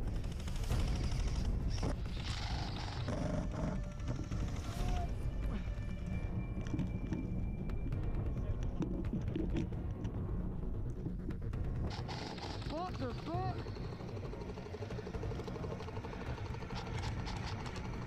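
Airsoft guns firing in rapid bursts, with people's voices and music underneath.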